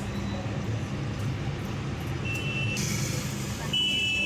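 Steady engine and road hum heard from inside a CNG-fuelled car driving in city traffic. A short high-pitched beep sounds about two and a half seconds in, and a longer, louder one near the end.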